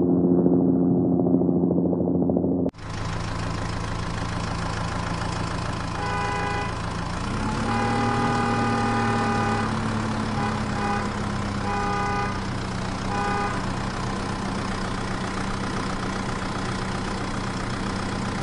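Toy-vehicle engine sound running steadily, with a rise in pitch about halfway through and several short horn-like toots. It starts as a muffled hum and changes suddenly to a fuller sound about three seconds in.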